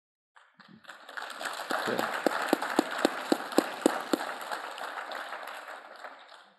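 Audience applauding: it starts about half a second in, builds, and fades near the end. In the middle, about eight sharper claps ring out about four a second, close by.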